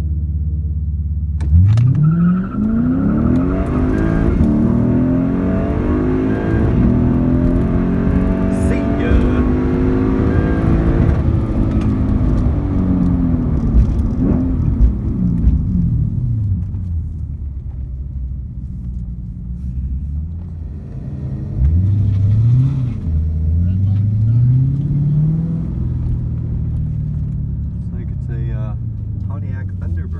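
Lexus IS F's V8 with an X-Force cat-back exhaust, heard from inside the cabin: idling at the line, then launching about a second and a half in into a full-throttle drag-strip pass, the pitch climbing and dropping back at each upshift until it eases off around the middle. Later it pulls hard twice more, briefly, each time rising in pitch, before settling back to a low steady run.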